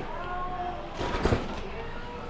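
Chatter of voices in the background, with a short, loud, crunchy clatter about a second in.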